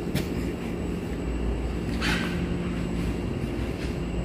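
Steady low mechanical hum of distillery still-house machinery running, with a brief hiss about halfway through.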